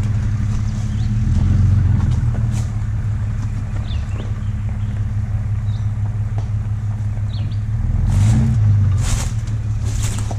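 Motor vehicle engine running steadily at low speed, swelling briefly about two seconds in and again near the end.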